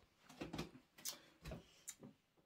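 A few faint, irregular clicks and soft knocks, like the handling noise of a hand-held camera being picked up and held out.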